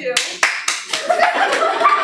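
Small audience clapping, with laughter and voices rising over the applause from about a second in.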